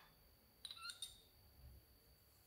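A quick run of three light, ringing clinks about a second in: a spoon and ceramic cup knocking against a glass mixing bowl as they are put down. A faint steady high whine sits underneath.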